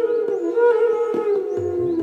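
E-base bamboo bansuri flute holding a long sustained note in Hindustani classical style, then bending it slowly downward in a glide in the second half.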